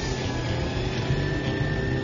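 KillaCycle electric drag motorcycle doing a burnout, its rear tyre spinning on the strip: a steady noisy rush with a faint, steady, high-pitched whine through it.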